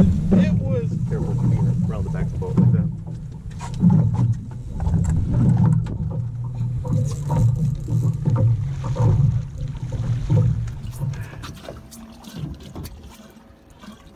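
Boat noise: a steady low drone of a boat motor with water and wind, and indistinct voices, fading out over the last few seconds.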